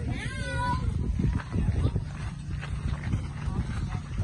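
Footsteps crunching on a gravel path with wind rumbling on the microphone, and a short wavering cry in the first second, a child's voice or a farm animal.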